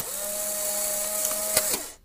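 Electronic TV-static sound effect: a steady whine over hiss that starts suddenly, then slides down in pitch and cuts off shortly before the end, like an old television switching off.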